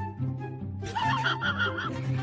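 Background music, with a horse's whinny laid over it as a sound effect from about halfway in; the whinny is wavering and quavering.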